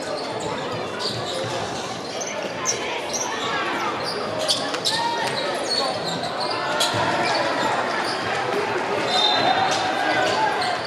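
Basketball bouncing on a hardwood court with scattered sharp knocks, over indistinct voices of players and spectators, all echoing in a large sports hall.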